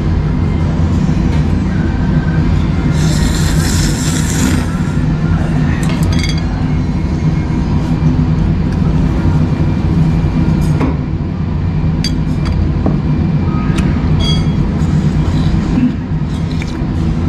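Eating a bowl of noodle soup: a chopstick and ceramic spoon clink against the bowl several times, with a slurp of noodles about three seconds in, over a steady low hum and background music.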